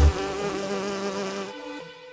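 A bee buzzing over the last held chord of electronic music; the beat stops at the start, the buzzing ends about one and a half seconds in, and the chord fades away.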